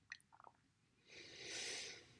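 A woman's soft breath out during a leg-circle abdominal exercise: a faint hiss that swells and fades over about a second, after a couple of small mouth clicks near the start.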